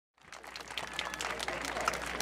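Audience clapping, fading in just after the start and growing slightly louder, with many separate hand claps.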